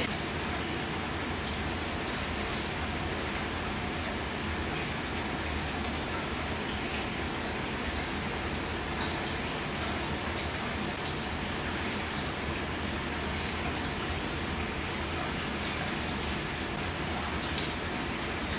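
Steady hum and hiss of a fan running, with a few faint light ticks scattered through it.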